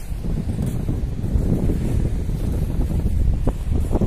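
Wind buffeting a phone's microphone on an open beach: a loud, unsteady low rumble.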